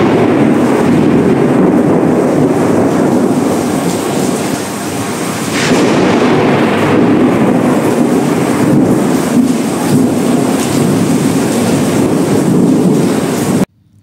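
Loud, continuous rolling thunder of a heavy thunderstorm, swelling and easing, with a sharper crack about six seconds in. It cuts off abruptly just before the end.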